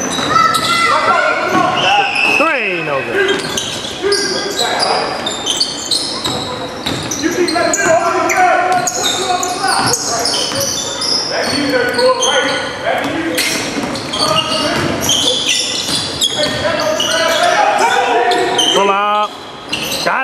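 Basketball game on a hardwood court: a ball bouncing as it is dribbled, short high squeaks of sneakers, and players' voices echoing in a large gym.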